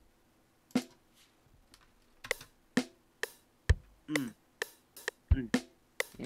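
Single drum-kit samples from FL Studio sounding one at a time at an uneven pace: hi-hat, snare and kick hits, with two tom hits that drop in pitch. These are notes being auditioned as they are clicked into a drum pattern, not a looping beat.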